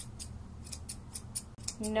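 Grooming shears snipping quickly and steadily through a standard poodle's curly topknot hair, about five short snips a second.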